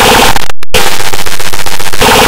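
Extremely loud, clipped and distorted audio from an effects edit: harsh noise with two steady tones, cutting out briefly about half a second in, then coming back as a dense rapid crackle like gunfire.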